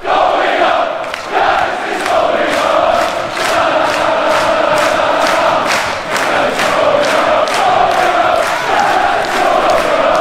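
Large football crowd chanting in unison, with rhythmic hand claps about twice a second.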